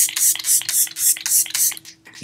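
Pump-spray bottle of setting spray misted repeatedly at the face: a quick run of short hisses, about three to four a second, over a faint steady hum.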